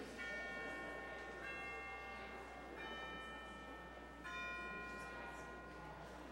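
Bells struck four times, about a second and a half apart, each note ringing on until the next.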